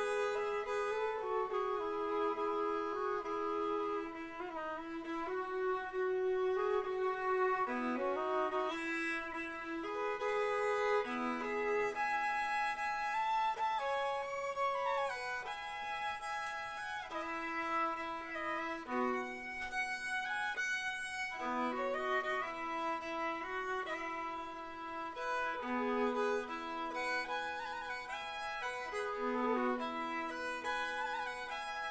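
Hardanger fiddle, a nine-string Norwegian fiddle, bowed in a slow non-dance tune. It plays long sustained notes, often two strings sounding at once, with a bright, ringing tone.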